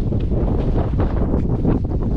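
Wind buffeting the camera's microphone: a steady, loud low rumble that rises and falls irregularly.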